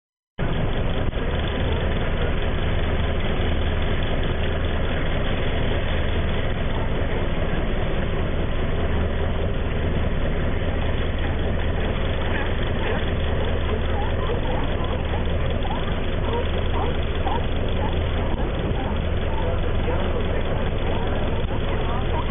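A boat's engine idling with a steady low hum.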